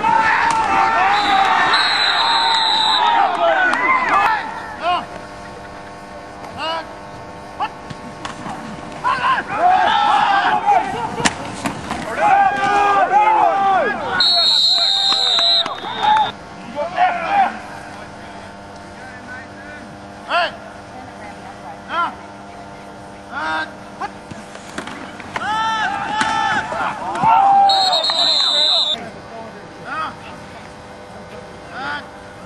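Shouting and cheering voices of players and spectators, coming in bursts, with scattered short claps or thuds.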